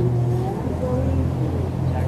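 Low, steady motor rumble that cuts off abruptly at the end.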